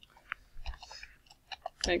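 Computer keyboard keys being typed: a few short, scattered clicks.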